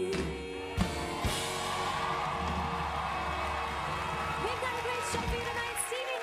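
The close of a live pop song played back from a TV broadcast: the singer's held vibrato note stops at the start, two drum hits follow, and the band holds a final chord under audience cheering. A voice starts talking near the end.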